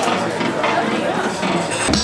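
Busy exhibition-hall chatter with faint music underneath. Near the end it cuts to electronic music from dualo du-touch instruments, with a steady bass note and sharp beats.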